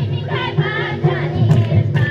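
A group of women and children singing a devotional song together, with a hand drum keeping a steady beat beneath the voices.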